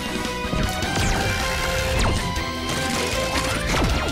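Background music with a steady beat for a cartoon transformation sequence, with several whooshing sweeps and a crash-like hit laid over it.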